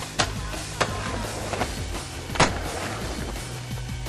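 Background music, over which a skateboard knocks sharply three times as the board hits rail and concrete; the third knock, about two and a half seconds in, is the loudest.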